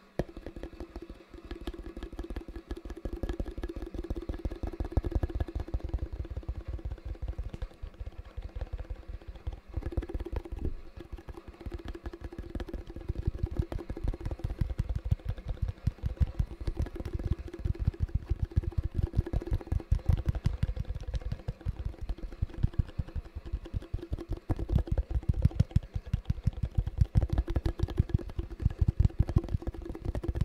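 Fingertips tapping rapidly on a white plastic tub held close to the microphone: a dense, continuous run of soft taps that starts suddenly, over a steady sound of rain.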